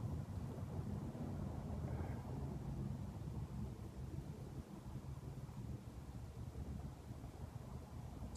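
Quiet room tone: a faint, steady low hum with no distinct events.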